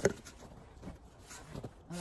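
Snow shovel working snow: a sharp scrape at the very start, then a few faint scuffs and scrapes.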